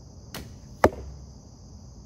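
A shot from a vintage Browning Explorer recurve bow: the string's release comes with a brief soft thump, and about half a second later the arrow strikes with a sharp, loud smack. Crickets chirp steadily behind it.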